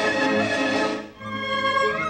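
Orchestral film score with violins playing. A swelling phrase breaks off about a second in, with a brief dip in level, and a new phrase begins.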